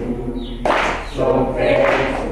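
A group of voices singing together, with rhythmic swells about once a second.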